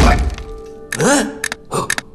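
A heavy thud as a cartoon character lands on wooden floorboards, followed about a second later by a short rising-and-falling vocal squeak and a few light clicks, over a held background music note.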